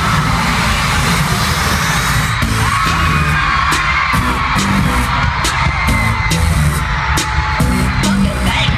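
Loud live concert music in an arena over a crowd screaming and cheering, with a heavy drum beat kicking in about two and a half seconds in.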